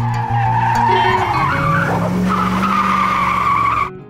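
An edited-in screech sound effect, like skidding car tyres, held for nearly four seconds with its pitch rising a little about halfway through, then cutting off suddenly near the end.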